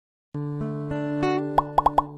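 Channel intro jingle: music with held, changing notes that starts a third of a second in after silence, topped near the end by four short, quick, rising pops that are the loudest sounds.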